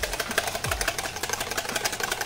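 Small wire whisk beating whipping cream in a plastic bowl: a rapid, even clatter of strokes, many to the second.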